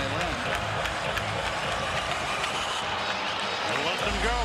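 Hockey arena crowd cheering steadily through a fight on the ice.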